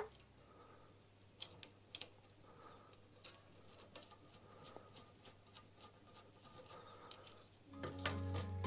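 Faint, scattered clicks and light taps, a dozen or so, from small mounting hardware being handled and fitted to a motorcycle headlight guard, over near silence.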